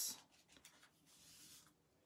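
Bone folder drawn along a scored fold in thin patterned paper, burnishing the crease: a faint scraping rub lasting under a second, about a second in.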